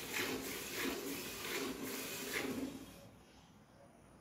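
Hand-milking a water buffalo: milk squirting in quick, even strokes into a steel bucket, about two to three squirts a second, stopping about three seconds in.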